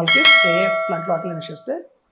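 Bell chime sound effect of an animated subscribe-button and notification-bell overlay, struck once at the start and ringing out for about a second and a half.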